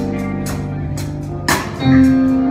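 Live rock band playing an instrumental passage between sung lines: electric and acoustic guitars holding chords over a drum kit, with a louder drum hit about one and a half seconds in.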